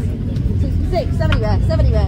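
An auctioneer's voice calling bids, over a loud, steady low rumble.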